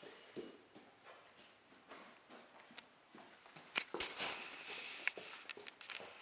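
Faint rustling and scattered light clicks of movement close to the microphone. A sharp click comes about two-thirds of the way in, followed by a couple of seconds of louder rustling.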